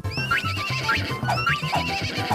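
Upbeat children's song with a steady bouncing bass beat, with a horse whinny sound effect heard twice over it, at the start and again just past halfway.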